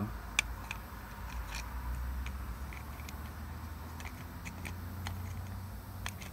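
Light, scattered clicks and ticks from a seat belt retractor and its plastic cover being turned and fitted in the hand, the sharpest about half a second in, over a low steady rumble.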